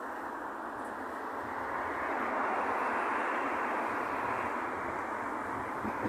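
Road traffic on a main road: a steady rush of passing vehicles that swells about halfway through and then eases off.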